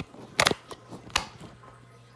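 A few sharp handling clicks and knocks, the two loudest about half a second and just over a second in, from hands working a small plastic battery-powered toy close to the phone's microphone.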